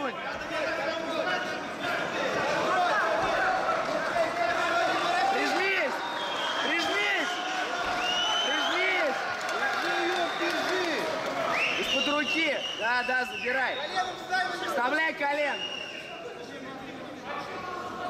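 Men shouting cageside over a steady crowd din, several voices overlapping, with the shouting thickest about two-thirds of the way through.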